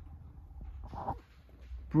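Quiet room tone in a pause between words: a steady low hum, with one brief faint pitched sound about a second in.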